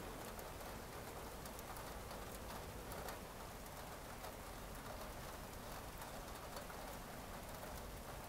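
Faint steady background hiss scattered with soft ticks.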